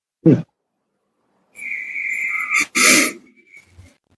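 A person's drawn-out wheezing, whistling breath starting about a second and a half in, ending in a short sharp burst, like a wheezy laugh or a sneeze.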